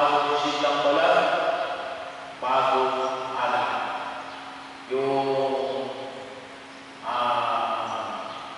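A priest chanting a sung prayer into a microphone, his voice carried over the church sound system. There are four held phrases, each starting suddenly and fading away.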